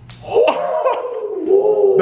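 Pool balls clicking sharply right at the start and again about half a second in, then a loud, drawn-out vocal cry reacting to a shot that only just misses.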